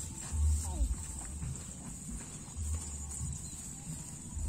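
Wind rumbling on the camera microphone in uneven gusts, with footsteps of people walking through a rice paddy, over a steady high-pitched hiss.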